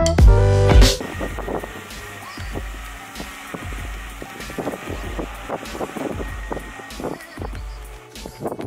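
Loud electronic music with a heavy beat cuts off about a second in. Then wind rumbles on the microphone over a faint steady whine from a small quadcopter drone coming down to land on rock; the whine stops near the end as it sets down.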